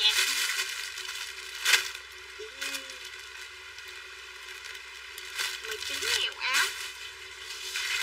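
Plastic packaging and clothing rustling and crinkling in short bursts as bagged garments are handled.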